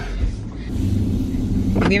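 Car running, heard from inside the cabin: a steady low rumble of engine and road noise, with a brief low thump at the start.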